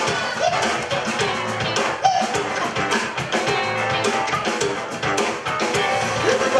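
A live band playing: drums, electric bass and electric guitar, with a steady beat.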